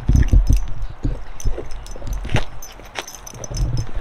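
A dog gnawing on a bone: irregular crunches and clicks, with its metal collar tags jingling.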